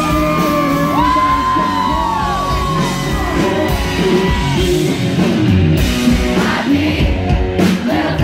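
Live country band playing loud, with electric guitar and drums under a male singer's voice, long held notes in the first few seconds.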